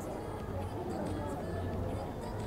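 Indistinct murmur of spectator voices over a steady low hum.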